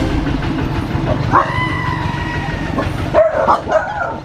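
Dog giving one long, high, steady whine, then a few short yelping barks near the end.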